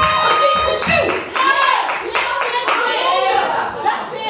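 A church congregation calling out in many overlapping voices, with hands clapping.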